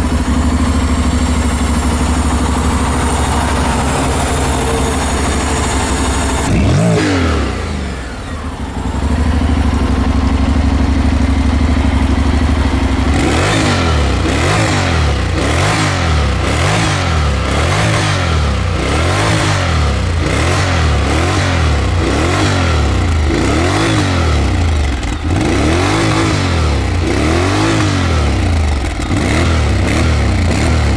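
Honda X-ADV 745's 745 cc parallel-twin engine running through its exhaust: a steady idle, one rev a few seconds in, then the throttle blipped over and over from about the middle, the revs rising and falling roughly once a second.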